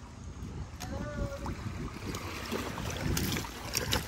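Wind buffeting the microphone over light sloshing and splashing of shallow seawater as people wade among rocks.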